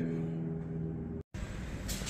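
A steady low hum with a few even tones, cut off abruptly by an edit, then low background noise with a single short click near the end. No motor sound is heard.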